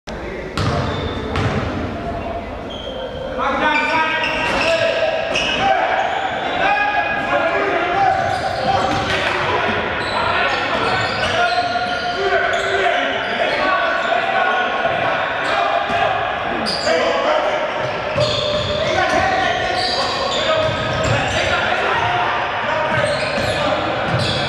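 Basketball game on a hardwood gym court: the ball bouncing on the floor amid players' and spectators' voices, echoing in a large hall.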